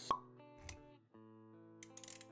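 Intro music for an animated logo, with sustained notes, punctuated just after the start by a sharp pop sound effect and a soft low thud about half a second later. The music drops out for an instant about a second in, then resumes.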